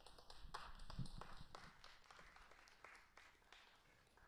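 Faint, scattered clapping from a few people, densest about a second in and dying away by about three seconds in.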